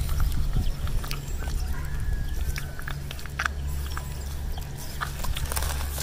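Fingers scratching and picking in wet sand and seagrass: a scatter of small clicks and scrapes over a steady low rumble.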